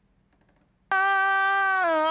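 A few faint computer keyboard and mouse clicks, then playback of an isolated lead vocal: one long sung note that starts abruptly, is held steady, and steps slightly down in pitch near the end. It is the pitch drift on the last note of the phrase that is being corrected in Melodyne.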